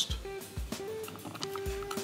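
Quiet background music with a few held single notes.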